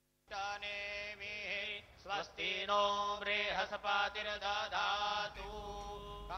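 A male voice chanting Sanskrit Vedic mantras at a Hindu puja, in long held notes with slides in pitch, starting a moment in.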